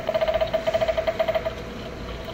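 A battery-powered animated Halloween prop's small speaker playing a rapidly pulsing electronic tone, about a dozen even pulses a second. It stops about a second and a half in.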